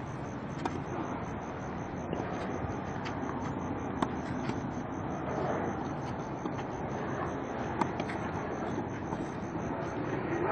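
Tennis rally: sharp pops of rackets striking the ball every second or two, the loudest about four and eight seconds in, over a steady background hiss.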